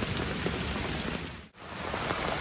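Steady rain falling on leaves in woodland. The sound drops out briefly about a second and a half in, then returns.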